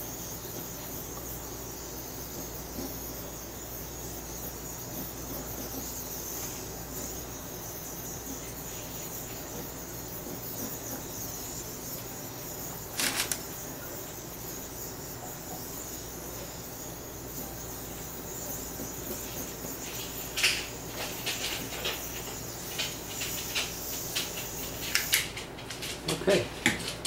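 Small handheld butane torch hissing steadily as its flame is passed over wet epoxy resin to pop surface bubbles. There is a single click about halfway, the hiss cuts off about a second before the end, and several clicks and taps come in the last few seconds.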